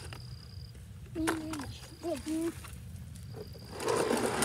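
A child's short spoken phrase over a low steady rumble, with a thin high whine coming and going, and a rough rustling noise near the end as a cardboard box of sidewalk chalk is handled.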